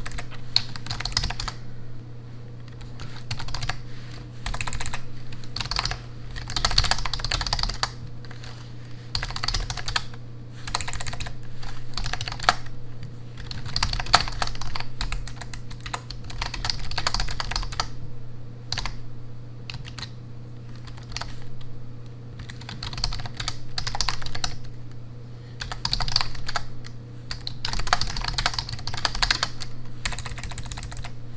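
Typing on a computer keyboard with low-profile keys: fast runs of key clicks lasting a second or two, broken by short pauses, over a steady low hum.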